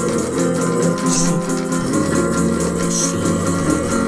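Folk punk song: a strummed guitar playing steadily between sung lines.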